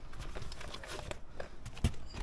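Faint handling sounds in a car boot: light knocks and rustling as a plastic tray is lifted out of the spare-wheel well.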